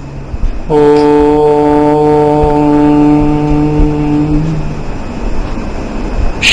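A man chanting a mantra, holding one long note on a steady pitch for about four seconds.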